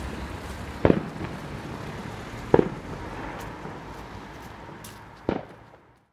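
Fireworks going off: three sharp bangs, about a second in, about two and a half seconds in and near the end, over a steady outdoor hiss.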